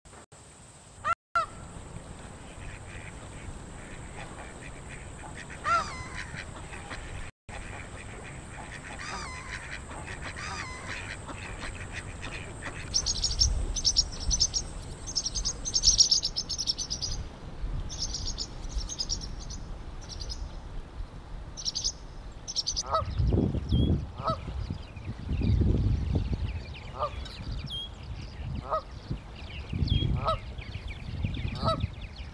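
Outdoor nature recording. A faint steady high whine and a few scattered bird calls give way, about halfway through, to a few seconds of rapid high-pitched bird chatter. In the last third, Canada geese honk repeatedly over a low rumble.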